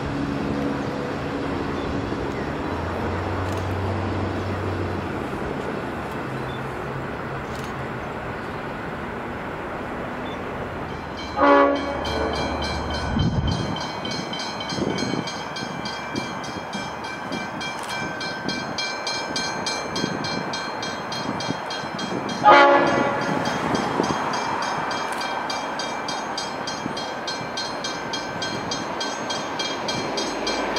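A Metro Hitachi electric suburban train rumbles steadily with a low motor hum for the first ten seconds or so. Then level crossing bells ring rapidly while an approaching V/Line N class diesel locomotive sounds its horn in short blasts, once around a third of the way in and again about two-thirds of the way through.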